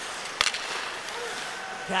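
Ice hockey arena during play: a steady crowd murmur, with one sharp clack of a stick hitting the puck about half a second in.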